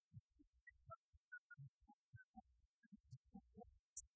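Near silence: only faint, scattered low thumps and blips, with no clear singing coming through.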